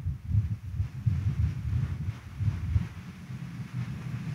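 Low, uneven rumble of background noise with a faint hiss above it, and no speech.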